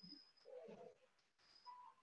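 Near silence: faint room tone through a call microphone, with a soft low sound about half a second in.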